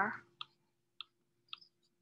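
Four faint, short clicks about half a second apart, from a computer mouse button pressed for each pen stroke as digits are handwritten on a screen whiteboard.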